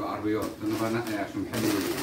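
Low male voices murmuring, then, about one and a half seconds in, the crinkle of a plastic wrapper bag being torn open.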